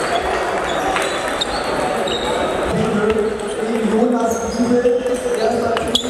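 Table tennis balls clicking off rubber paddles and bouncing on tables, in quick sharp knocks. Some come from this rally and some from the neighbouring tables, over a hall full of background voices.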